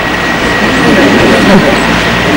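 Steady hiss and hum of a lecture-hall microphone and sound system during a pause in the talk, with a faint thin high tone throughout and a faint voice underneath about halfway through.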